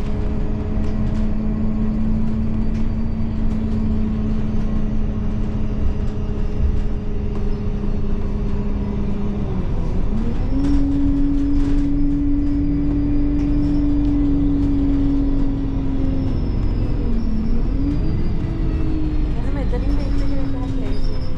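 City bus driving along a road, heard from inside the cabin: a low rumble under a steady drive hum whose pitch glides up about halfway through, then dips briefly and rises again near the end.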